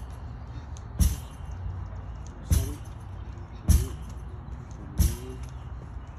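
A lacrosse ball thrown against a rebounder and caught again in the stick, over and over: four sharp thumps, about one every 1.3 seconds, each with a short ringing tail.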